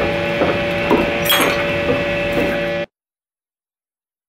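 Steady electrical hum made of several fixed tones, with a few short vocal sounds over it, cutting off abruptly to silence about three seconds in.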